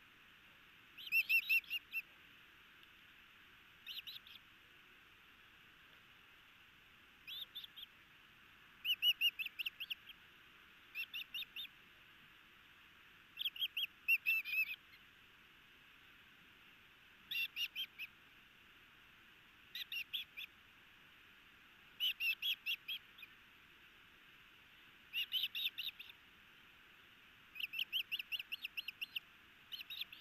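Osprey calls during a feeding at the nest: bursts of short, high-pitched whistled chirps, several quick notes to a burst, repeating every two to three seconds.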